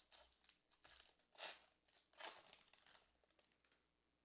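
Faint crinkling and tearing of a football trading-card pack wrapper being torn open by hand, in a few short rustles about a second apart.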